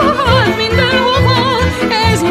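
Hungarian nóta music: a melody line with wide, wavering vibrato over a steady, pulsing bass accompaniment.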